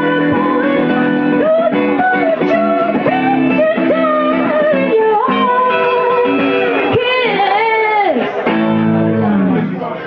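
Live guitar and a singer's voice performing a song. The song winds down near the end.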